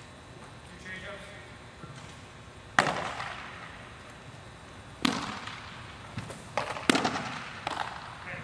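Baseballs smacking into catchers' mitts: three loud, sharp pops about two seconds apart, each ringing out in the echo of a large indoor hall, with a couple of smaller smacks near the end.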